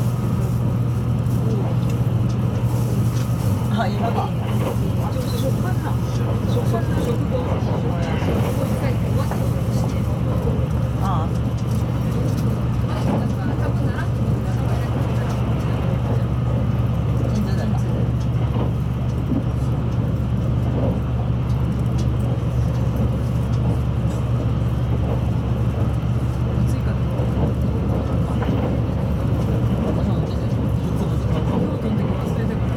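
Running noise of a JR West 681 series electric train heard from inside a motor car at speed: a steady low rumble from the wheels and running gear that holds even throughout.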